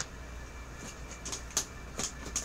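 Faint handling noise of items and packaging being moved about: a few soft clicks and rustles, the clearest about three quarters of the way through, over a steady low room hum.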